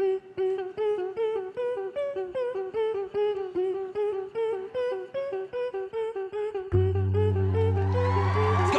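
A beatbox group's voices make music by mouth: a short hummed note pulses about four times a second, and a melody over it steps higher from about two seconds in. A deep, sustained vocal bass comes in near the end.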